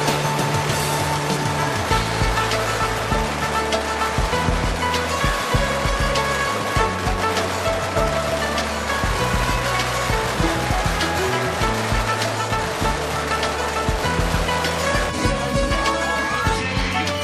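Dense, continuous crackling of long red firecracker strings going off, with music and a steady stepping bass line playing over it.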